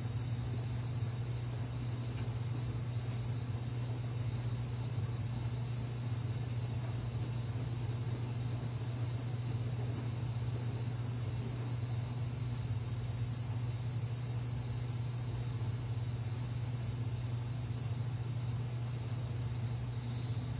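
A steady low background hum with a faint hiss above it, unchanging throughout.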